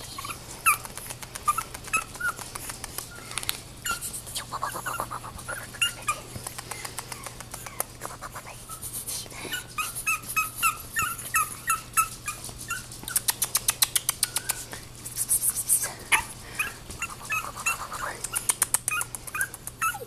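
Ten-week-old Chihuahua puppy making small high yips and squeaks while play-biting a hand, some in quick runs of about four a second, with bursts of fast clicking in the second half.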